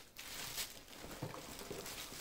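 Faint rustling and crinkling of plastic wrapping as a packed part is handled inside a cardboard box.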